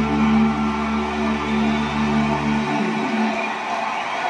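The closing bars of a Hindi song played back for a dance, ending on a long held chord. The bass drops out about three seconds in and the remaining notes trail off.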